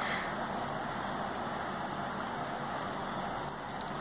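Steady, even background hiss with no distinct event, and a few faint ticks near the end.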